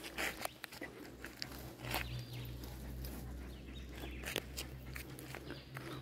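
Faint, scattered crunches and scuffs of footsteps on a gravel road as a dog walks up and sits down, over a low steady rumble.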